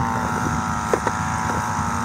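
A small engine running steadily, a level drone with a slight wavering in pitch, with wind buffeting the microphone.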